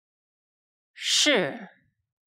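A voice speaking a single Chinese syllable about a second in: a hissing consonant start, then a vowel whose pitch falls steadily, as in a falling (fourth) tone.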